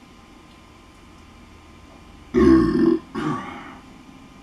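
A man's loud burp about two and a half seconds in, in two parts, the second weaker and fading.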